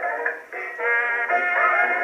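A jazzy 1920s dance-band record playing on an acoustic Edison Diamond Disc phonograph. The ensemble sounds thin and boxy, with no bass at all, and dips briefly about half a second in.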